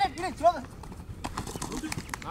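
Men shouting short calls that rise and fall in pitch during the first half second, then a few sharp clicks.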